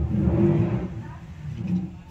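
A low rumbling noise, loudest in the first second, then fading, with a brief smaller swell near the end.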